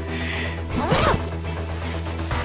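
A jeans fly zipper pulled down once, a short rising rasp about a second in, over background music.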